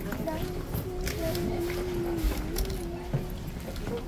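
Passengers' voices inside a metro car, with one steady, slightly wavering tone held for about two seconds in the middle.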